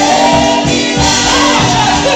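Female gospel vocal group singing in harmony through microphones, holding long notes over a live band with a steady beat.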